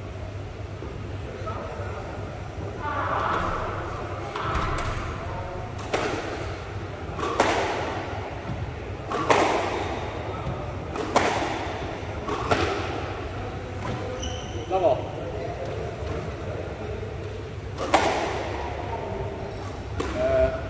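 Squash rally: the ball cracking off rackets and the court walls every second and a half or two, each hit echoing in the hall.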